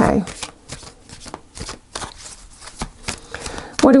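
A deck of tarot cards being shuffled by hand, a quick, irregular run of light card flicks and slides.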